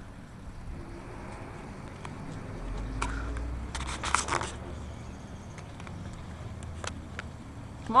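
Scattered clicks and scrapes of someone climbing a metal lattice antenna tower onto a roof, with a quick cluster of clicks about four seconds in, over a faint low rumble.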